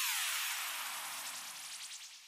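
A descending swoop sound effect: several tones glide together from high to low pitch and fade away over about two seconds.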